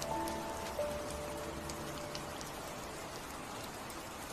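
Steady rain falling, with scattered raindrop ticks, under soft instrumental piano notes that die away about two seconds in, leaving the rain on its own.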